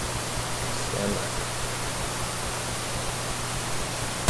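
Steady hiss with a low electrical hum, and one brief faint voice-like sound about a second in.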